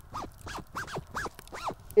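A clothing zipper on a robe being pulled quickly up and down about five times, each stroke a short rising-and-falling zip.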